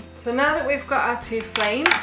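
A woman's speaking voice, with no other sound standing out.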